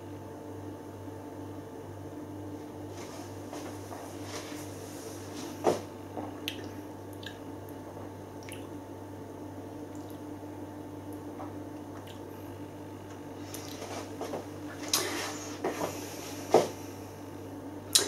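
A man drinking a sip of pilsner and tasting it: scattered soft wet mouth sounds, swallowing and lip-smacking, with a sharper one about six seconds in and several more near the end, over a steady low hum.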